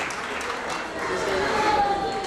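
Audience applauding, with voices from the crowd mixed in.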